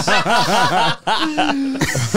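A group of men laughing together: a run of quick chuckles in the first second, then one drawn-out laughing note.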